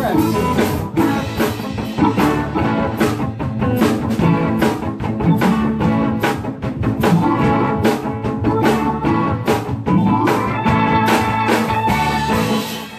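A live cover band plays an instrumental passage with two electric guitars, keyboard and a drum kit, the drums keeping a steady beat.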